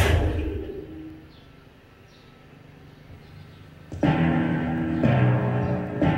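Soundtrack of a VCD opening played through a TV's speakers. A loud gong-like hit at the start rings and fades over about a second, then there is a quiet stretch. About four seconds in, the music for a logo animation starts suddenly, with low sustained string notes that change about once a second.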